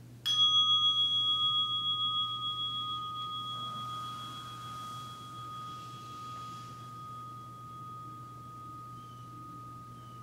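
A meditation bell struck once, ringing on in two clear tones that pulse gently as they slowly fade.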